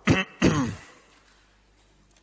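A person coughing to clear the throat: two short bursts in quick succession within the first second.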